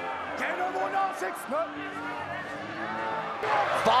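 Several voices shouting over one another on a rugby field, one calling "No" about a second in, growing louder near the end.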